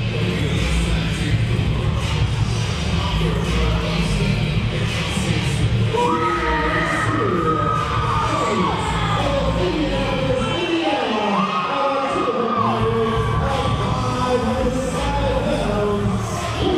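Wrestlers' entrance music played loud over a hall PA: a heavy bass beat with a melody line that comes in about six seconds in, and the bass drops out for a couple of seconds near the middle before returning.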